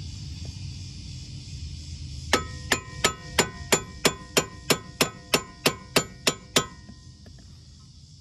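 A hammer strikes steel about fourteen times in a steady run, roughly three blows a second, each with a short metallic ring. It is driving the new lower control arm's ball joint stud up into the steering knuckle to seat it.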